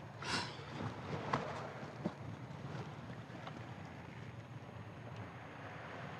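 Steady outdoor wind and sea noise, with a few faint short sounds and a small click about two seconds in.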